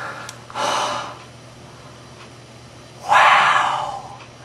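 A man gasping twice in shock, breathy and unvoiced: a short gasp about half a second in, then a longer, louder one about three seconds in.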